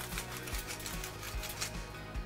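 Hand-twisted salt grinder grinding salt: a rapid, irregular run of small clicks throughout. Soft background music with steady low tones underneath.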